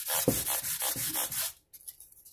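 Abrasive pad on a fret-crowning block with two round steel rods, rubbed back and forth along a mandolin's frets, leveling, crowning and polishing them. It makes quick scratchy strokes, about four a second, that stop about one and a half seconds in.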